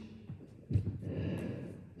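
A man's breath drawn in, starting suddenly about two-thirds of a second in, in a pause between counts; otherwise quiet room tone.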